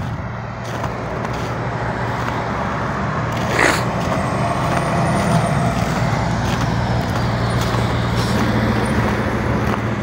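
Road traffic with a heavy truck's engine running close by: a steady low rumble over road noise that grows somewhat louder toward the middle, with one brief sound about three and a half seconds in.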